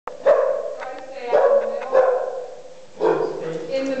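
A young bearded collie barking four times in short, sharp barks, spaced about a second apart.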